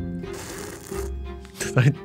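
Sound effect of a slushie being slurped through a straw, a noisy slurp lasting under a second, over background music with a low plucked bass line.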